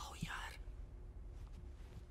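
A man's short, breathy, half-whispered exclamation at the very start, lasting about half a second. After it there is only faint room tone with a low steady hum.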